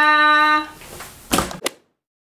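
A woman's drawn-out, sung-out "Paaa!" goodbye held through the first part, followed about a second and a half in by two short sharp clicks.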